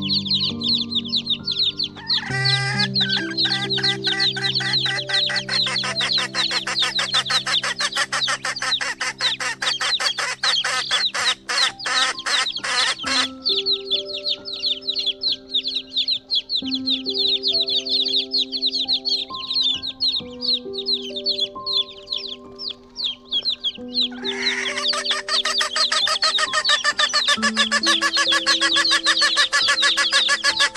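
A large flock of chickens clucking and calling over one another in a dense, unbroken chorus. The chorus swells about two seconds in, thins past the middle and swells again near the end, over background music of held notes.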